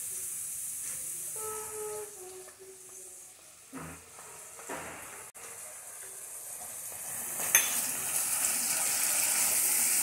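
Sliced mushrooms sizzling in butter and olive oil in a cast-iron skillet while cream is added, with a single utensil knock about four seconds in. The sizzling grows louder over the last couple of seconds as the cream is stirred in with a spatula.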